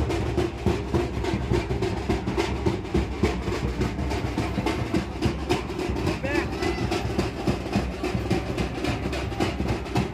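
Dhol and tasha drums playing a dense, fast, steady beat.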